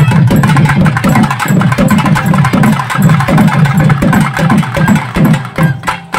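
Live folk drumming on barrel drums: low strokes that drop in pitch as they ring, about two to three a second, under a fast run of sharp stick strokes, loud and driving.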